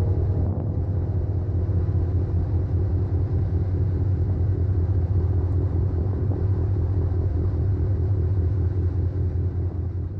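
Steady low engine rumble, even and unbroken.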